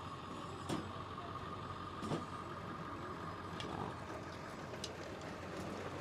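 Steady outdoor background noise with a constant hum and the low sound of vehicles, broken by a few light knocks.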